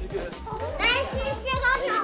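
Young children's high-pitched voices and chatter, over background music with a bass line and a regular kick-drum beat.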